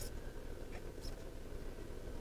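Low, steady background hum of a store, with a few faint small clicks.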